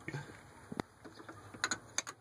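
A few sharp little clicks as a fuel-line fitting is turned by hand onto a new fuel filter: one just before a second in, and two or three close together near the end.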